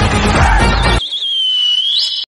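Upbeat background music that cuts off about halfway through, leaving a single shrill whistle. The whistle begins with a warbling trill over the music, then holds one long tone that rises at the end.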